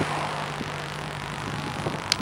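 Steady low hum of a vehicle engine over a continuous wash of traffic noise.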